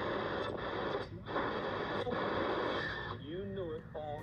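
Marc NR-52F1 double-conversion shortwave radio playing band static through its speaker as it is tuned: a steady hiss that dips out briefly a few times. Near the end the hiss eases and a faint voice comes through.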